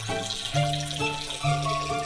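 Electronic synthesizer music: slow, held notes of about half a second each over a bass line that alternates between two low pitches. It is a melody made by setting a urine analysis to music.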